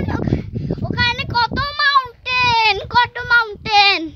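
A young boy singing in a high voice: a string of short held notes, several dipping in pitch at their ends, with wind rumbling on the microphone.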